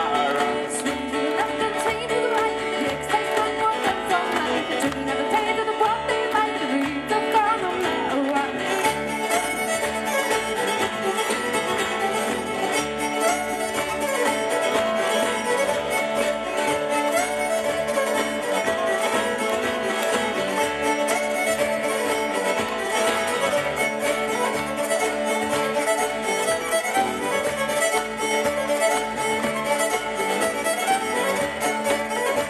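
Live folk band playing an instrumental break, with the fiddle to the fore over strummed acoustic guitars and mandolin.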